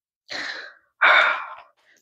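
A woman's breaths close to a clip-on microphone: a short, softer breath, then a louder, longer one like a sigh about a second in.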